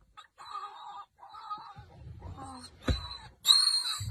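Warthog squealing in distress as a leopard seizes it in its burrow: a run of repeated shrill cries that turns much louder and harsher about three and a half seconds in, with a single thump shortly before.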